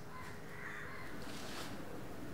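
Crows cawing several times in the background.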